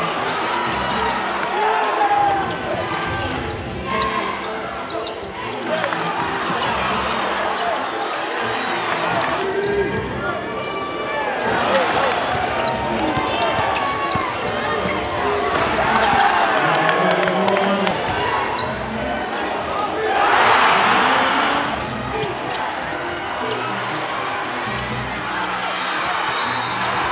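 Live basketball game sound in an arena: crowd voices and a basketball bouncing on the court, with a burst of crowd cheering about twenty seconds in.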